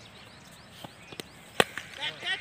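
A cricket bat hits the ball with a single sharp crack about one and a half seconds in, a big hit that goes for six. Two fainter knocks come just before it.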